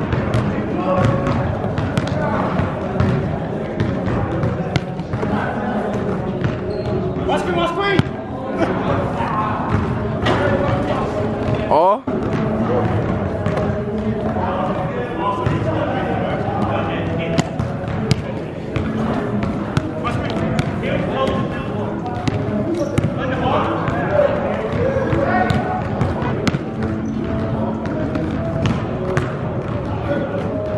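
Basketball bouncing on a gym floor in sharp thuds, set in a large echoing hall. Under it runs background music with vocals, which breaks off briefly about twelve seconds in.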